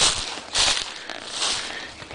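Footsteps crunching through dry leaf litter, about three steps.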